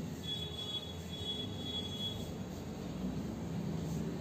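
Chalk squeaking on a blackboard while writing: a thin, high-pitched squeal that lasts about two seconds, over low room hum.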